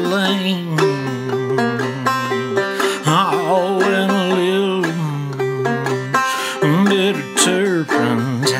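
Clawhammer banjo playing, with a low male voice holding long, wavering sung notes over the picking.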